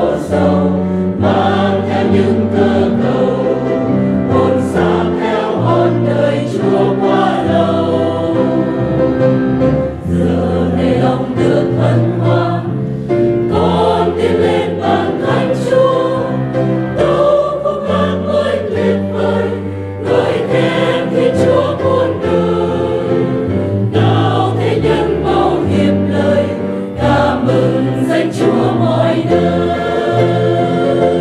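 A mixed church choir of men and women singing a hymn in Vietnamese, over low accompaniment notes held and changed every second or two.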